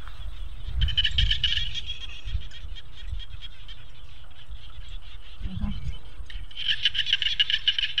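Frogs calling in a chorus of rapid pulsed trills, in two bouts: one about a second in, and a louder one near the end.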